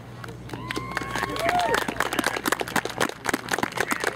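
A few people clapping, the irregular claps starting about a second and a half in and building. A voice calls out briefly just before.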